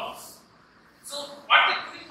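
A man's voice lecturing in short bursts of speech; the loudest burst comes about one and a half seconds in.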